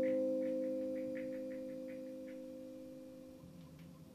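Electric guitar chord left ringing out, its held notes fading slowly until they have almost died away by the end. About ten faint light ticks sound over it in the first half.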